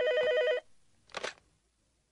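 Electronic ring of a cordless home telephone: a fast warbling trill that flips between two pitches, which stops about half a second in. A short clack follows about a second in, as the handset is picked up.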